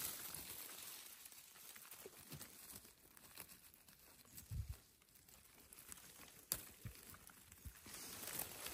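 Faint rustling of leaves and twigs as a gloved hand works through low forest-floor plants to pick chanterelle mushrooms, with a couple of soft knocks and one sharp click past the middle.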